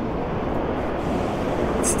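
Steady low rumble and hiss of outdoor background noise, with no distinct sound standing out.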